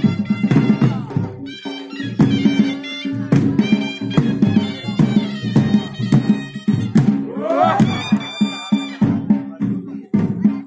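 Traditional Himachali deity-procession music played live: frequent drum beats under loud, shrill wind instruments holding sustained notes, with one note swooping upward about seven and a half seconds in.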